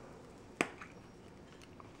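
Small hard objects being handled on a counter: one sharp click about half a second in, then two faint ticks, over a quiet room.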